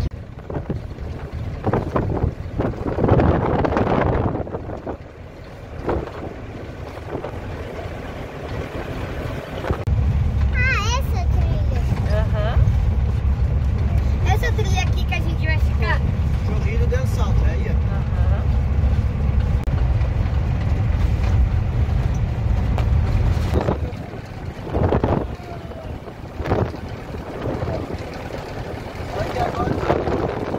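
Agrale-based motorhome driving on a gravel road, heard from inside the cab: a low engine and road rumble that grows heavier for about the middle third, with brief high voices over it now and then.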